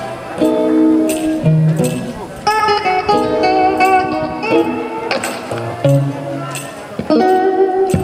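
Electric guitar played live in a blues style, with sustained notes that bend and glide in pitch, in phrases with short breaks between them.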